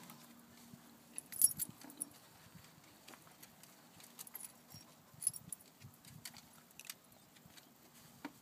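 Scattered light clicks and clinks, the loudest about a second and a half in and again just past five seconds, over a faint steady low hum.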